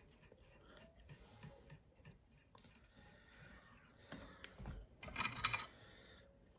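Faint ticks and light rasping of fly-tying thread being wrapped from a bobbin around a hook shank held in a vise, with a short cluster of louder clicks about five seconds in.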